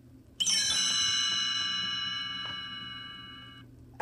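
A page-turn chime: one bell-like ring of several tones that starts about half a second in and fades out over about three seconds. It is the signal to turn the storybook's page.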